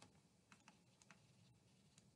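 Near silence with a few faint, scattered clicks of a stylus tapping and stroking on a tablet screen while handwriting.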